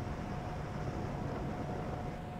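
Steady wind and sea noise aboard a ship in heavy seas, with a thin, steady tone running through it.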